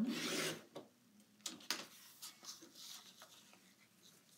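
Fiskars paper trimmer's sliding blade cutting across a sheet of cardstock: a short rasping cut right at the start. It is followed by fainter paper scuffing and a couple of light clicks as the cut pieces are moved.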